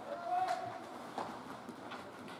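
Ice hockey play in a rink: a drawn-out shout from a player or spectator, with two sharp clacks of sticks and puck on the ice, about half a second and just over a second in.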